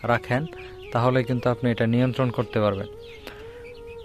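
Tiger chicken flock clucking and calling, with a man's voice speaking briefly over them. A thin, steady drawn-out tone runs underneath and is left on its own for the last second or so.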